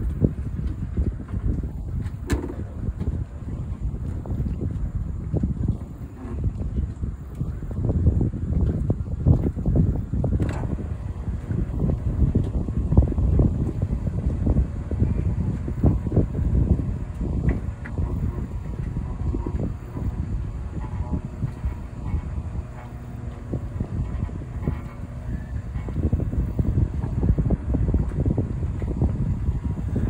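Wind buffeting the microphone in a gusty low rumble, with a sharp click about two seconds in and another about ten seconds in.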